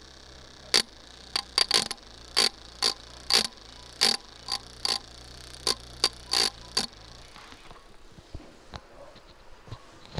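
Small DC motor running smoothly as the load discharging a home-made lead-acid cell: a steady low hum, with sharp, irregular clicks about twice a second. Hum and clicks fade out about seven seconds in.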